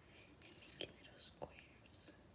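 Faint sounds of a kitchen knife slicing through a mango held in the hand, with two soft sharp clicks about two-thirds of a second apart.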